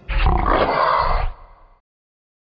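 A single loud yell, about a second long, starting right after the music ends and dying away about a second and a half in.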